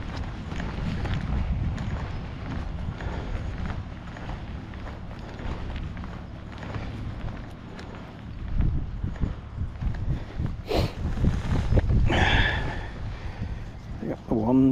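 Footsteps of someone walking on a gravel path and then onto a grass bank, an irregular crunching tread, over a low rumble of wind on the microphone.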